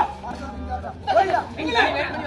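Speech: voices talking over one another, over a steady low hum.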